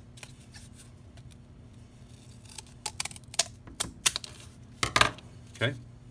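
Corrugated cardboard being cut by hand: a run of sharp, irregular clicks from about halfway through.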